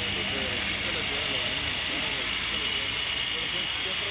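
A heavy armoured truck's engine running as it rolls slowly past, under a steady hiss, with the voices of onlookers in the background.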